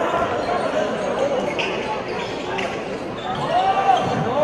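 A handball bouncing on a wooden sports-hall floor, a few sharp knocks over the steady echoing murmur of the hall, with players' voices.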